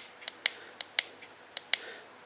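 A small push button on the back of a universal digital tachometer clicking as it is pressed again and again, about seven short sharp clicks, each press stepping the flashing digit of the tyre-circumference setting up by one.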